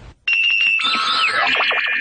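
A short electronic chime jingle: a held high tone with quick ticks, then a falling sweep of several tones, opening a show segment.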